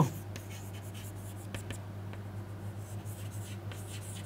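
Chalk writing on a chalkboard: faint, irregular scratches and taps as figures are written, over a steady low hum.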